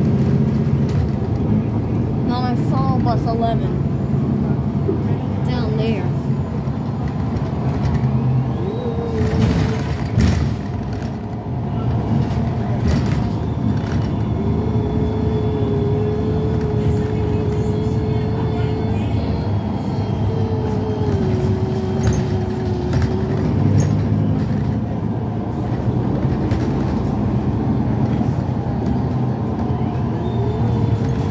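Cabin of a New Flyer XD40 diesel city bus driving: steady low engine and road rumble with occasional knocks and rattles. A steady whine runs through the middle and steps down in pitch once.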